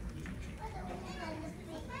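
Young children's high-pitched voices chattering and calling out.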